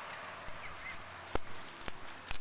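Light metallic jingling and a few sharp clicks from a dog's collar and leash hardware as she moves on the leash.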